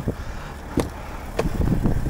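Driver's door of a Chevrolet Silverado pickup being opened: a few sharp clicks from the handle and latch over a low, steady rumble of wind.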